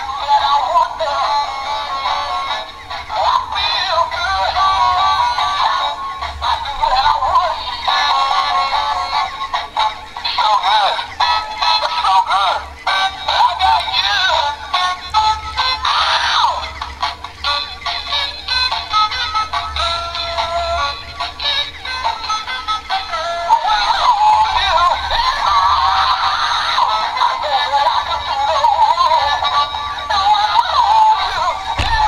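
Battery-powered singing plush pig toy playing its song through its small built-in speaker: a thin, tinny sung tune with backing music and no bass.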